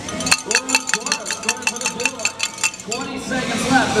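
A rapid, even run of sharp metallic clicks, about seven a second, from a competition robot's mechanism on the field. It lasts some two and a half seconds and stops.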